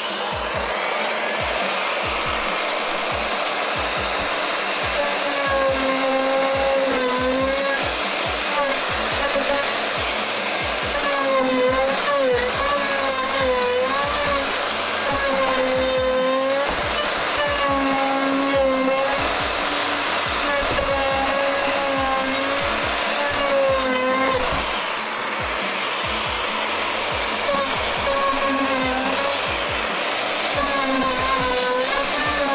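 Craftsman plunge router running at a low speed setting, routing out a wooden guitar body. A steady motor whine whose pitch wavers and dips again and again as the bit cuts.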